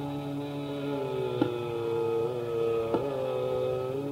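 Hindustani classical performance of Raag Darbari in slow bada khayal: a steady tanpura drone, with a long held note that comes in about a second in and bends slightly in pitch. Single tabla strokes fall twice, about a second and a half apart.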